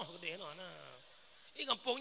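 A man's voice over a microphone: one long vocal sound sliding down in pitch and trailing off, then speech resuming near the end.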